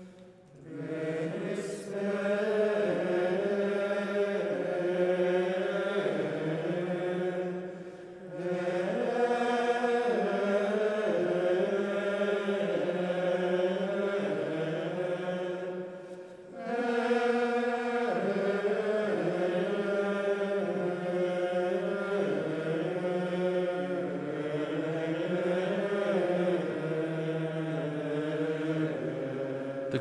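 Liturgical plainchant sung in long, sustained phrases, with short pauses for breath about a second in, about eight seconds in and about sixteen seconds in, ringing in a large basilica.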